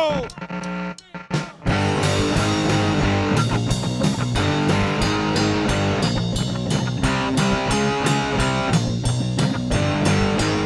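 Rock music with electric guitar and drums: a few scattered hits, then about a second and a half in the full band kicks in with a fast, steady beat.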